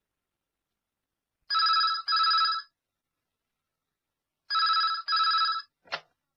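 Telephone ringing in a double-ring pattern, twice: one double ring about a second and a half in, the next about three seconds later. A short click follows just before the end as the call is answered.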